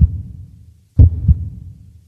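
Deep bass thumps of an intro sound effect: one hit at the start, then a quick double hit about a second in, each dying away.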